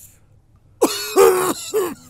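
A person coughing three times in quick succession, starting just under a second in, each cough loud and raspy with a voiced edge.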